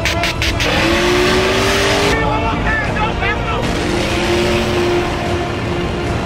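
Car engines running, with short squeals a little past the middle, mixed with voices and background music.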